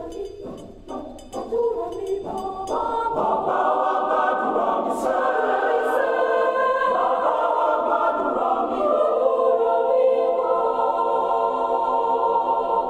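Mixed-voice choir singing a gospel prayer song, with rhythmic clapping about twice a second for the first few seconds, then swelling into loud, sustained full chords.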